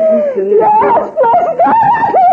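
A person's voice, loud and continuous, gliding up and down in pitch without clearly recognisable words.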